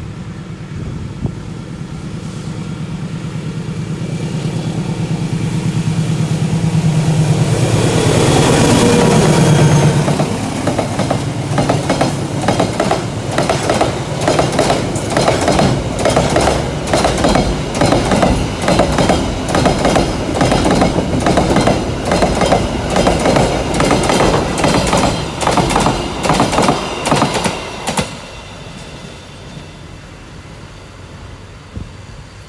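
Container freight train passing close by: the locomotive approaches and its engine note drops in pitch as it goes past about nine seconds in, then the wagons' wheels click in a steady rhythm over the rail joints until the last wagon clears near the end.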